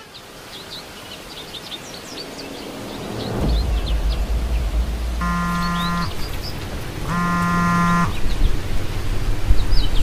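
Outdoor ambience of small birds chirping repeatedly, with a low rumble building up a few seconds in. Around the middle come two flat, buzzy beeps, each just under a second long and about a second apart.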